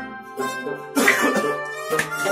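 Instrumental passage of Kashmiri Sufi folk music: harmonium holding steady reed chords, with a plucked long-necked lute and a clay pot drum. Two sharp strokes come in, the louder about a second in.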